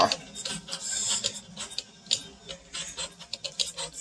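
All-lead-screw 3D printer running at high print speed: its stepper motors drive the lead screws with a fast, irregular run of ticks and clicks as the print head changes direction.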